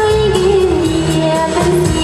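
A song with a lead singing voice over a steady beat and a bass line; the sung note slides slowly down through the first second and a half.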